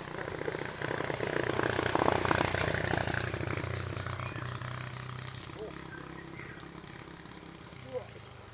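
A motor vehicle's engine passing by, a low, fast-pulsing hum that swells over the first two seconds and then slowly fades away.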